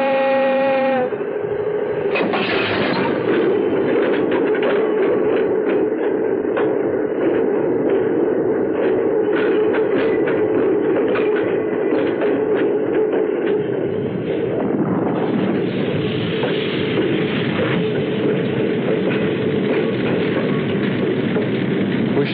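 Diesel locomotive hauling a train of tank cars. A horn blast about a second long at the start is followed by the continuous rumble of the running train, with the rapid clickety-clack of wheels over rail joints.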